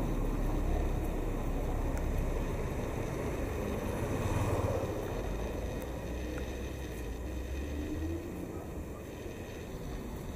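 Low, steady rumbling background noise with no music, loudest around the middle and easing off toward the end.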